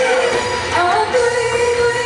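A woman singing live into a microphone over musical accompaniment, with long held notes and a short rising melodic turn in the middle.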